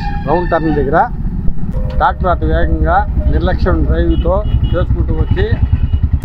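A man talking, with a steady low rumble of road traffic under his voice that grows stronger in the second half.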